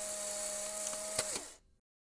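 A small electric motor whirring briefly: it spins up, runs steadily with a click partway through, and winds down and stops about a second and a half in.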